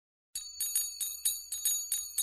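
Bells ringing in quick repeated strikes, about five a second, each leaving a clear high ring under the next; they start about a third of a second in.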